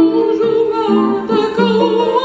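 A woman singing a classical Arabic art song with wide vibrato over instrumental accompaniment.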